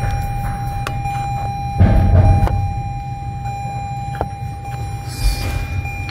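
A screwdriver and gloved hands working the plastic levers of an air-mix servo motor, giving a few sharp clicks, a short rumbling knock about two seconds in and a rustle near the end. A steady thin whine sits behind it all.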